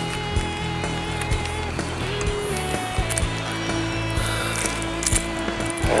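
Background music with held notes and occasional percussive hits.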